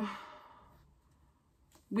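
A woman's drawn-out "so" trailing off into a breathy sigh that fades away within about half a second, then a pause of near silence until she starts speaking again at the very end.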